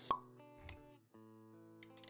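Intro jingle for an animated logo: a sharp pop sound effect just after the start, a soft low thud a little later, then held notes of synthesized music.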